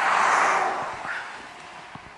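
FedEx delivery box truck driving past: tyre and engine noise swelling to a peak in the first half-second, then fading away over the next second as it moves off.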